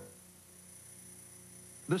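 Faint steady low hum with light hiss in a brief silent gap between two TV commercials. A man's voice begins near the end.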